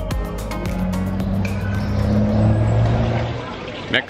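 Background music ending just after the start, then street traffic: a motor vehicle's engine running past with a low hum, dropping away shortly before the end.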